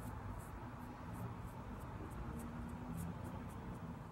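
A small brush's bristles stroked repeatedly over the hair at the hairline, a series of short, faint scratchy strokes at about three a second, as the baby hairs are laid down.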